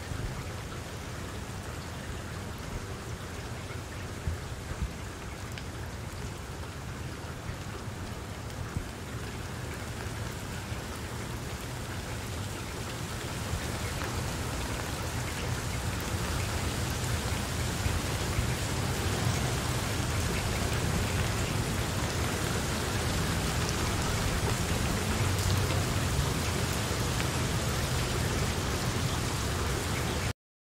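Steady rain, an even hiss with a fine crackle of drops, getting louder from about halfway through.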